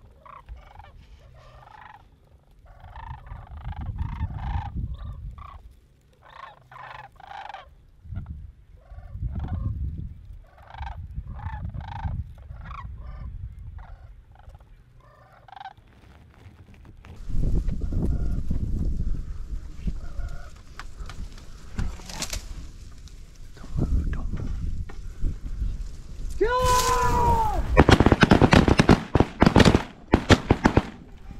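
Flock of sandhill cranes calling overhead, their rolling, rattling calls repeated again and again over the low rumble of wind on the microphone. In the last few seconds the noise grows much louder, with one loud call falling in pitch.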